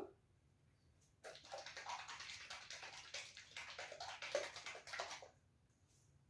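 Plastic squeeze bottle of fluid acrylic paint being handled, its liquid sloshing and gurgling in a run of quick wet rattles that starts about a second in and stops sharply about four seconds later.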